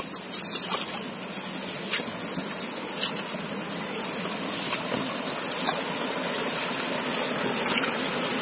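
Steady high-pitched chorus of night insects over an even rushing hiss, with a few light rustles and steps through grass.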